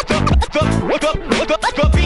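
A DJ scratching a vinyl record on a turntable over a drum beat: quick, choppy back-and-forth scratches sliding up and down in pitch, cut in and out with the mixer, between steady kick drum hits.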